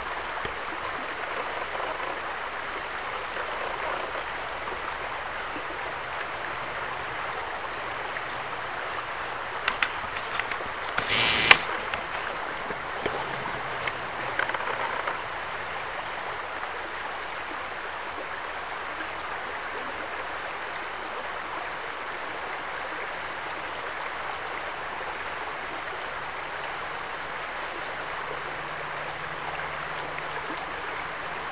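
Shallow creek water running steadily over gravel riffles. A brief cluster of sharp knocks comes about a third of the way in, the loudest at about eleven and a half seconds.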